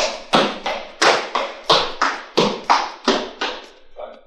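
Footfalls of trainers striking the floor in a quick high-knees running drill, about three landings a second, stopping shortly before the end.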